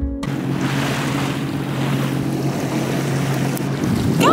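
Jet ski engine running with a steady drone, mixed with rushing water and wind on the microphone.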